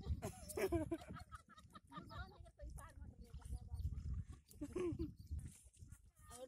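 Voices of people talking in short bursts at intervals, over a steady low rumble.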